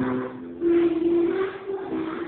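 A large group of children singing together in unison, with long held notes.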